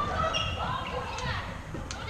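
Floorball play on an indoor court: players' voices calling out, with short knocks of sticks, ball and feet on the court floor.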